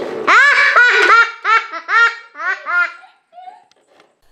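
A young child laughing: a run of high-pitched 'ha's that get shorter and softer, trailing off about three seconds in.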